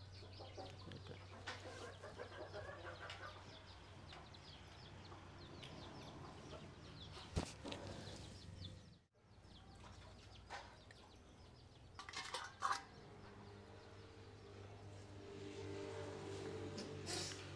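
Faint clucking of chickens, with a few short sharp knocks: one about seven seconds in and a cluster around twelve seconds.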